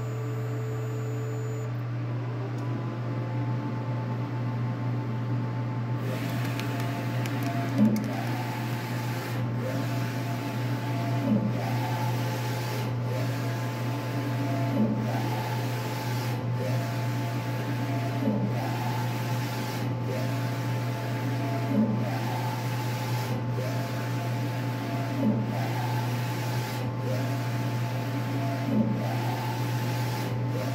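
Large-format inkjet printer printing: over a steady low hum, the print carriage starts shuttling about six seconds in, its motor whine rising and falling on each pass with a knock about every three and a half seconds.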